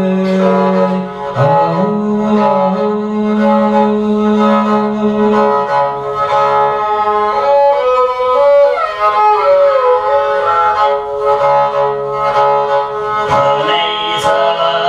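Tuvan igil, a bowed two-stringed fiddle, playing an instrumental passage: a held low note under a sliding melody, the low note dropping away about five seconds in.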